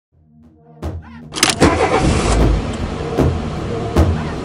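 Intro music sting with a car engine starting and revving mixed in: it starts faint, then builds about a second in, with heavy hits at irregular intervals.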